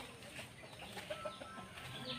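Faint, scattered bird calls over quiet outdoor background noise.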